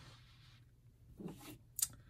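Soft rustling of a lace-trimmed fabric piece being handled on a cutting mat, with one short sharp click near the end.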